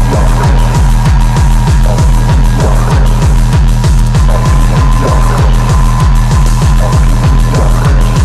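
Hard electronic dance music in a darkstep / drum and bass style: a fast, steady run of heavy kick drums, about four or five a second, each dropping in pitch, under a held high tone.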